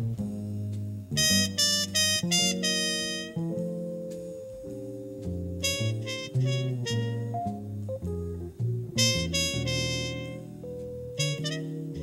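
A live jazz quintet of electric guitar, trumpet, double bass, organ and drums playing. Short clusters of bright chords sound over held low notes.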